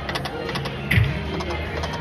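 A video slot machine spinning its reels: electronic spin sound effects with a few clicks and one louder hit about a second in as the reels stop, over a steady low hum.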